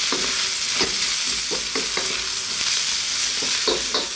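Sliced onions, garlic and ground spices frying in oil in a wok with a steady sizzle, and a wooden spatula scraping and tapping against the pan as they are stirred over raised heat.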